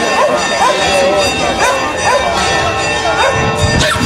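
Dogs barking and yipping repeatedly, several calls a second, over crowd voices and steadily playing music, with a brief low thump near the end.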